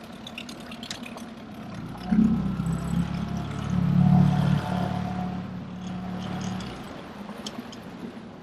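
Small outboard motor running with a low hum that starts about two seconds in, is loudest around four seconds and dies away before the end, over faint water sounds.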